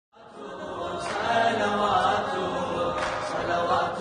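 Melodic Arabic devotional chanting of a mawlid, fading in from silence over about the first second and then steady.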